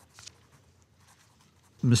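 Quiet room tone with a faint, brief rustle of paper about a quarter second in, then a man's voice starts speaking near the end.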